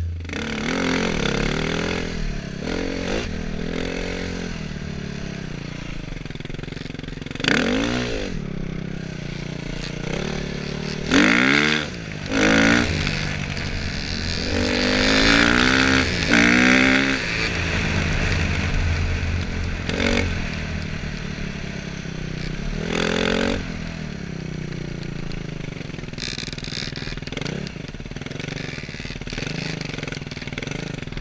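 Dirt bike engine being ridden on a dirt track, its pitch rising and falling as the throttle opens and closes, with several sharp revs through the middle of the ride.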